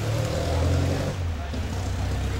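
Hand pump pressure sprayer misting a water and diatomaceous earth mix onto a potted succulent, a soft spray hiss. Under it runs a steady low engine-like rumble.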